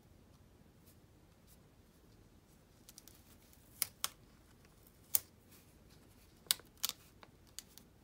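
About half a dozen sharp, light clicks from metal precision tweezers picking up and pressing down planner stickers on paper. The clicks are spread over the second half, after a few quiet seconds.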